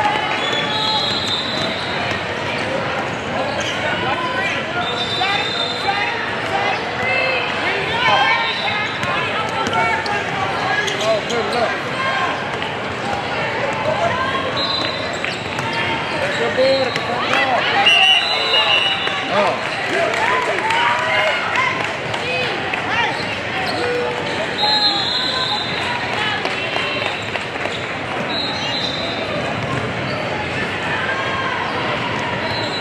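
Basketball being dribbled on a wooden court amid the constant hubbub of many voices in a large hall, with short high squeaks every few seconds.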